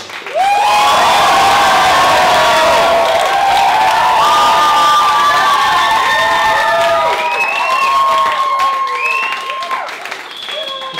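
Audience cheering and applauding, bursting out suddenly about half a second in, with many overlapping high shouts and whoops over the clapping. It eases off slightly near the end.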